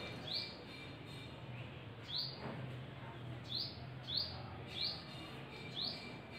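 A small bird chirping repeatedly, about six short rising chirps at uneven intervals, over a faint steady low hum.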